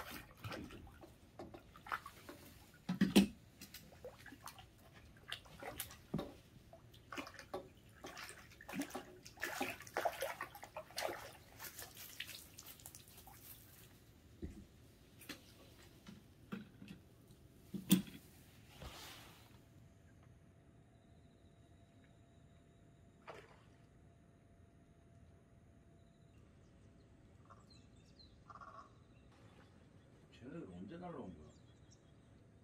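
Irregular water splashes and drips mixed with scattered knocks for about the first twenty seconds, with two sharper louder knocks. After that it falls faint, leaving a thin steady tone and a few small ticks.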